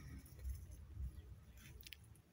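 Faint low rumble on a handheld phone's microphone as it is moved, with a few light ticks near the end.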